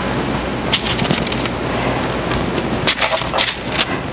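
Soft crinkles and taps of canned artichoke pieces being set onto pita pizzas on a parchment-lined sheet pan: a few about a second in and a cluster near the end. They sit over a steady rushing background noise.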